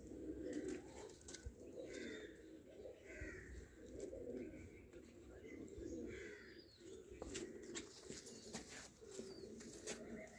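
Domestic pigeons cooing in repeated low, rolling phrases, faint, with a few light clicks late on.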